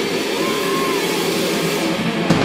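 Loud live rock band playing: a dense, steady wall of distorted guitar and drums, with a brief wavering whine that rises and falls about half a second in.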